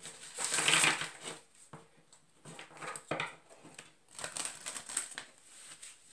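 A deck of oracle cards being shuffled by hand: a run of rasping card flutters, loudest in the first second, then quieter shuffles with a sharp tap about three seconds in.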